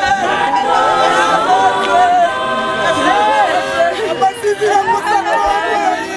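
A group of voices singing unaccompanied, several parts held together, with people talking over the singing.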